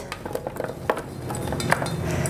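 Cut beet pieces tipped from a stainless steel mixing bowl onto a metal baking tray: a few sharp clinks of metal and pieces dropping onto the tray, the loudest about a second in, over a low hum.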